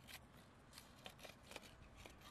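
Knife blade scraping and clicking against the shell of a large freshwater mussel as it is pried open: a faint series of about six short, sharp scrapes.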